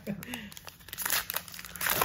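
Foil trading-card pack wrapper crinkling and being torn open by hand, a run of crackles that grows louder toward the end.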